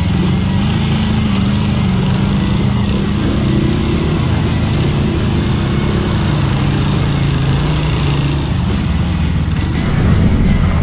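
Dirt bike engine running at low, slightly varying revs while the bike is ridden slowly through mud.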